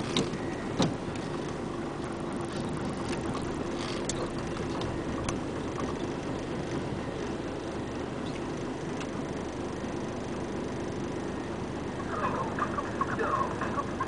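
Komatsu WA470 wheel loader's six-cylinder diesel engine running steadily at work, with two sharp knocks about a second in and a brief burst of higher, warbling sounds near the end.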